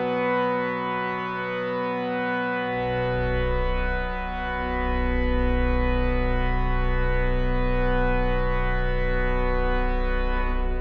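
Aeolian-Skinner pipe organ holding sustained chords that slowly shift. About three seconds in, a deep pedal note enters beneath and the sound grows fuller, ringing in the cathedral's long reverberation.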